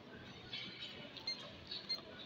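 Melamine plates being handled on a digital weighing scale, giving a few light plastic clicks over faint background noise.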